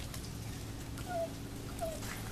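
Old English Sheepdog/Basset Hound mix dog whimpering: two short whines, about a second in and again near the end.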